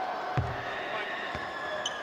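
A basketball bouncing twice on the hardwood court, two short thumps about a second apart, over the steady murmur of an arena crowd.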